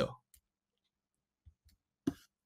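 The last syllable of a spoken word, then a pause broken by a few faint, short mouth clicks, two of them close together near the end.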